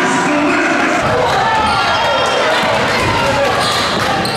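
A basketball bouncing on a hardwood gym floor, with voices over it.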